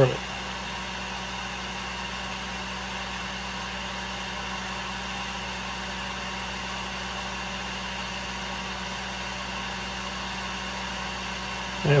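Heat gun running steadily: a constant, even blowing noise with a low hum.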